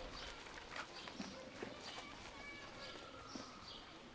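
Faint footsteps of several people walking past, a few soft steps heard as short ticks over a low steady background.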